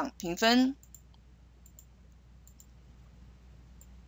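A few faint, sharp computer mouse clicks spaced out over a quiet background.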